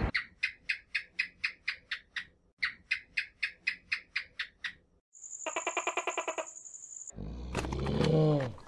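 A high chirping call repeated in two runs of about ten quick, evenly spaced notes. About five seconds in it gives way to a short, high buzzing trill, and a different, lower call begins near the end.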